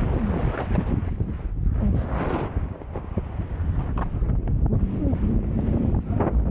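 Loud wind buffeting the microphone during a fast ski descent, with skis hissing and scraping through snow as they turn.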